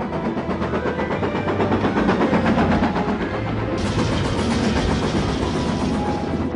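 Steam locomotive running at speed, its exhaust beating in a fast, steady rhythm over a low rumble. A loud hiss joins from about four seconds in.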